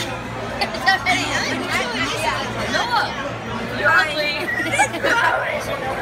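Background chatter of several people talking at once in a large room, over a steady low hum.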